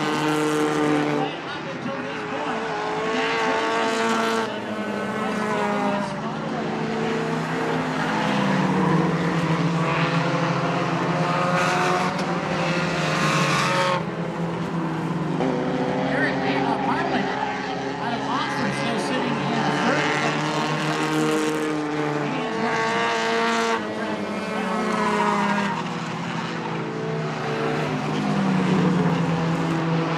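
Race car engines running at speed around an oval track, their pitch rising and falling again and again as the cars accelerate out of the turns and pass by.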